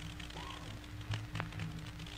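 Pause in the speech filled by the steady low hum and faint hiss of an old 1945 courtroom recording, with two faint clicks a little past a second in.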